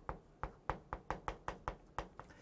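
Chalk striking a chalkboard while handwriting is written: a quick run of short, sharp taps, about five a second, one for each stroke.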